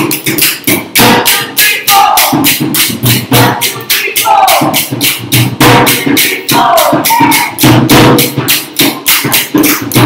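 Rajasthani dhol and khartals played together in a fast, steady rhythm: sharp wooden khartal clicks over the dhol's deep beats, with a singing voice in short falling phrases about once a second.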